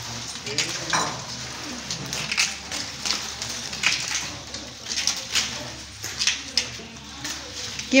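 Palm fronds rustling and crackling as they are handled and split, with irregular sharp crackles, under faint background voices.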